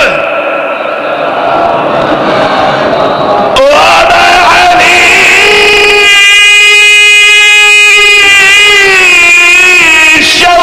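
A gathering chanting salawat together in the first few seconds. Then a man's amplified voice takes over, drawn out into one long, wavering sung note.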